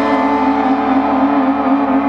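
Electric guitars and bass through amplifiers sustaining a loud, droning held chord with no drums, the steady ringing wavering slightly in pitch.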